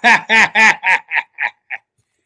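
A man laughing: a run of about seven short "ha" bursts, about four a second, getting quieter and shorter until they trail off near the end.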